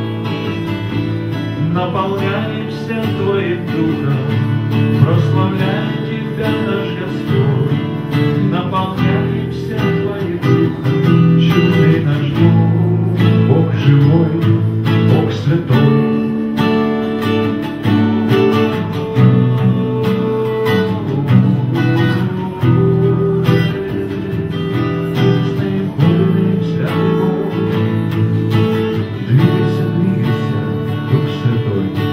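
Two acoustic guitars strummed together while a man sings a worship song into a microphone.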